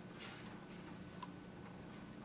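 A quiet gap between pieces of music: faint room tone with a few scattered small clicks, irregularly spaced.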